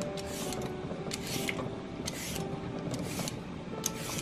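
Vegetable peeler scraping strips of skin off a cucumber, a short rasping stroke about once a second, with faint background music underneath.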